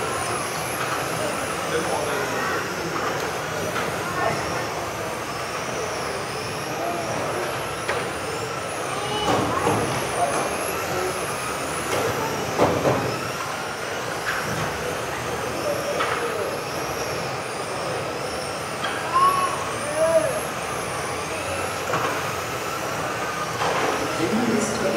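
Several electric RC racing cars running laps on an indoor track, the high whine of their motors rising and falling as they speed up and slow down, echoing in a hall.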